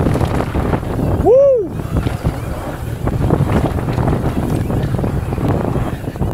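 Mountain bike descending a dirt trail at speed: a steady rush of wind on the action camera's microphone with tyre and trail noise. About a second in, the rider gives one whooping "woo!" that rises and falls in pitch, reacting to a jump.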